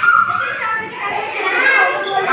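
Several young children's voices, shouting and chattering over one another at play.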